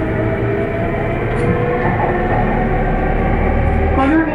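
Running noise of a JR E231-500 series electric commuter train heard from inside the carriage: a steady rumble of wheels and traction motors as the train moves off along the station platform, swelling slightly near the end.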